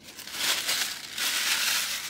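A white paper food wrapper crumpled in the hands, giving a continuous crackling, crinkling rustle.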